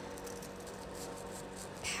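Craft scissors cutting through a folded paper coffee filter, faint, over a steady low room hum.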